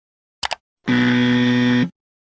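Animation sound effects: a quick double click, as of a mouse, about half a second in, then a steady, loud electronic buzzer lasting about a second, an error-style buzz that goes with the warning against careless sharing.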